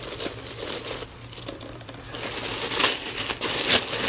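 Black tissue paper crinkling and rustling as hands pull it open inside a packing box, getting louder about halfway through.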